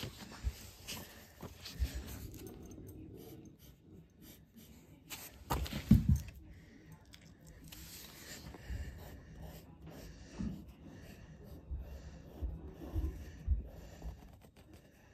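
Handling noise from a phone held close to the microphone: irregular rubbing and soft knocks, with one louder bump about six seconds in and several knocks near the end.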